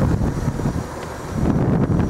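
Wind rumbling on the microphone, easing briefly about a second in.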